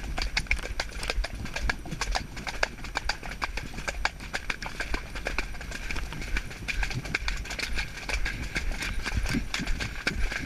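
Pony's hooves striking a wet, muddy track in a steady rhythm, heard from the rider's helmet.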